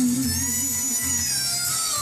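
A woman singing into a microphone over backing music with a regular bass pulse; her held note wavers with vibrato and fades about a second in.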